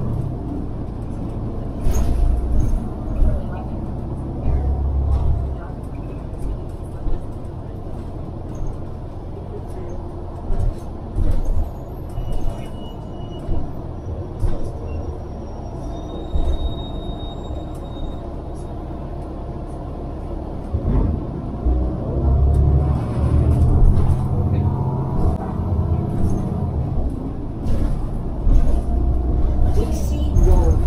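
City bus heard from inside the cabin: a steady low rumble of engine and road that swells as the bus pulls away from an intersection and again later on, with scattered rattles and clicks from the body.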